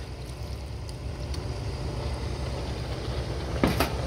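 Alcohol-free white wine poured from a cup over sliced mushrooms in a hot Instant Pot insert, trickling down through them to the bottom of the pot, over a steady low rumble. A light knock or two near the end.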